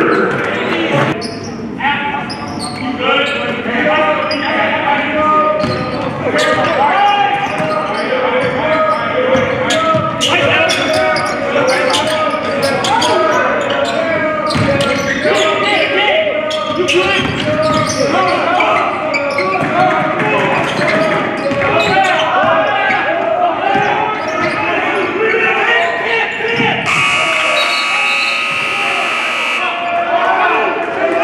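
Basketball being dribbled and bouncing on a hardwood gym floor amid players' and coaches' voices, all echoing in a large hall. Near the end a horn sounds steadily for about two and a half seconds.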